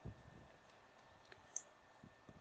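Near silence: quiet room tone in a pause of speech, with two faint short clicks a little past the middle.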